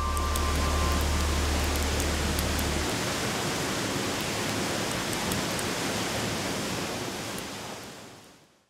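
A steady rushing noise with a few faint crackles. A low drone underneath cuts off about three seconds in, and the whole sound fades out near the end.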